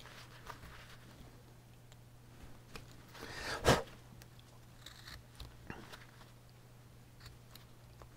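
Carving knife cutting into basswood, a scatter of faint, short crunchy scrapes and clicks as the blade slices the wood fibres.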